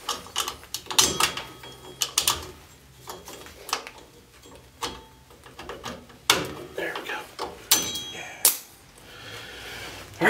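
Scattered sharp metallic clicks and clacks, several with a brief ring, as rear drum brake hardware is handled: locking pliers are worked off the self-adjuster spring and lever, and the steel shoes and springs knock into place.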